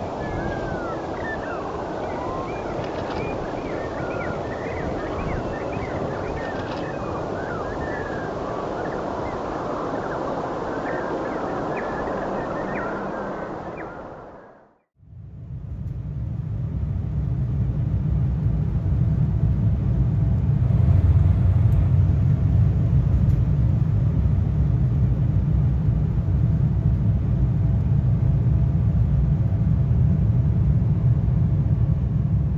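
Boeing 737 MAX jet engines at go-around power, a steady roar heard from beside the runway, with small birds chirping over it. About halfway through, the sound fades out. It is followed by the steady low rumble of a jet airliner cabin during the takeoff roll, which builds over the first few seconds and then holds.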